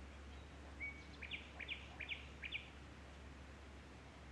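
A bird calling: one short steady note, then four quick sweeping chirps over about a second and a half, heard faintly over a steady low hum.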